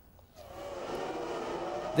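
Engines of a field of Formula One cars at a race start, fading in about half a second in and building to a steady sound of many engines at once.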